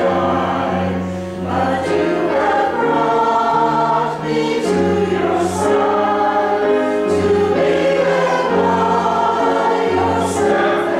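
Mixed choir of men and women singing in parts, moving through held chords that change about once a second.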